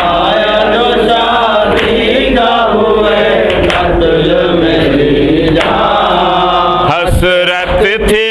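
A group of male voices chanting a lament refrain together in unison. About seven seconds in, the lead reciters' own voices come back in over it.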